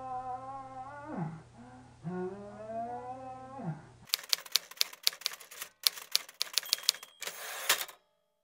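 Two long, drawn-out moans from a wounded man, each held about two seconds and falling away at the end, over a steady hum. About halfway through this cuts to a rapid run of typewriter-like clicks, which stops just before the end.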